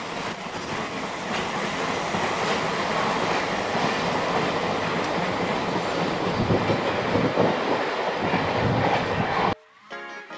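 Freight train of container flatcars rolling past close by, a steady heavy rumble of wheels on rail with a clatter of wheels over the rail joints. The sound cuts off suddenly near the end.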